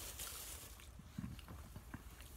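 Faint chewing of a jelly bean, a few soft mouth clicks over a low steady room hum.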